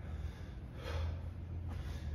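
A person exercising breathes out once, short and forceful, about a second in, while pressing a weight overhead. A low steady hum runs underneath.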